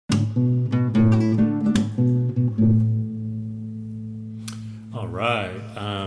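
Classical guitar plucked: a quick run of single notes over a low bass note, then the low note is left ringing for a couple of seconds, with one more pluck. A man's voice starts about a second before the end.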